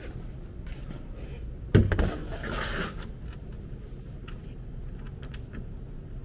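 A single sharp knock a little under two seconds in, followed by a brief scraping rustle and a few light clicks, over a steady low hum.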